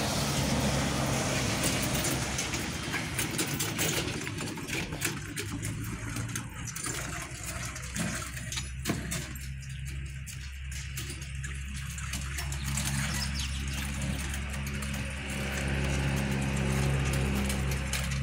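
A motor vehicle's engine runs steadily as a low hum, with irregular clicks and rattles from a hand trolley loaded with boards being pushed over rough asphalt.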